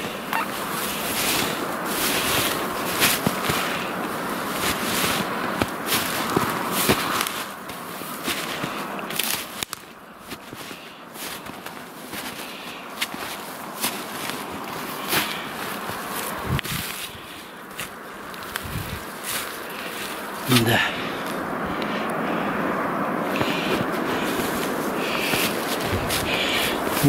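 Footsteps through snow-covered dry grass and brush, with dry stems and twigs crackling and snapping underfoot and brushing past. It is quieter for a stretch in the middle.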